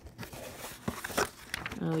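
Clear plastic LEGO parts bags crinkling as they are handled, with a couple of short clicks about halfway through.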